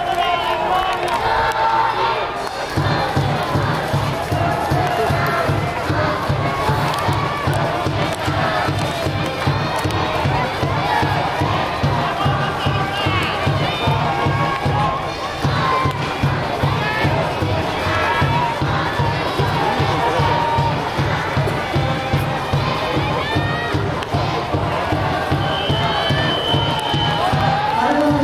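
Stadium cheering section chanting and shouting in unison. A steady, evenly spaced drum beat comes in about three seconds in and drives the chant.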